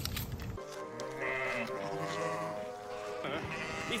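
Cartoon soundtrack: background music with a flock of sheep bleating.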